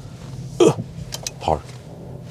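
A man's speech in a car cabin over a low, steady hum, with a few short clicks just after a second in.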